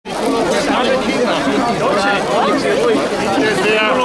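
Crowd chatter: several people talking at once in overlapping voices.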